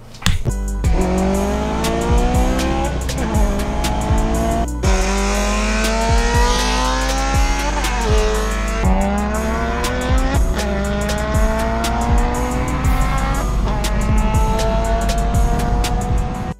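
Turbocharged VW GTI four-cylinder engine pulling hard at wide-open throttle. Its pitch climbs steadily and then drops at each upshift, about five times, with music underneath.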